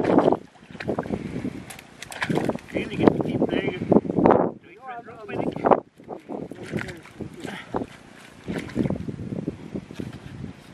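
Axe chopping into a waterlogged log lying in a creek, making irregular knocks amid water splashing.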